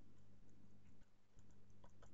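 Faint, irregular ticks of a thin brush dabbing acrylic paint onto a stretched canvas, over a steady low electrical hum.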